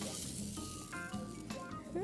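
Low sizzling from a hot nonstick frying pan over a gas flame as melted cheese and tapioca are lifted off it, under soft background music.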